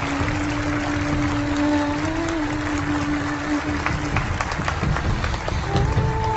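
Audience applauding, with soundtrack music of long held notes beneath.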